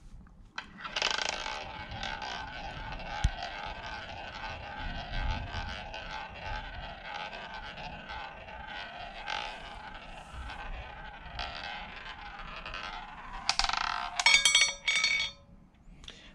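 A roulette ball rolling around the track of a wooden roulette wheel, a steady rolling sound with a faint ringing. Near the end it drops and clatters across the diamonds, frets and pockets of the spinning rotor before settling in a pocket.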